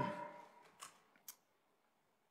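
The tail of a voice dies away into the room. Two short, sharp clicks follow about a second apart, and then the sound cuts to dead silence.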